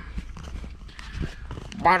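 Faint rustling and small clicks of hand and camera handling inside a truck cab, over a steady low rumble. A man's voice starts near the end.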